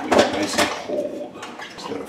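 Kitchen clatter as a plastic blender jar and its lid are handled on the counter, with a couple of sharp knocks in the first half second and lighter knocking after.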